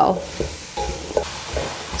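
Chopped onion, celery and mushrooms sizzling in a non-stick pan as a spatula stirs them, dry-frying without oil while the mushrooms release their juices.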